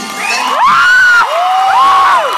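A loud crowd of teenage students cheering, with high-pitched whoops and screams that rise and fall, the strongest twice in quick succession.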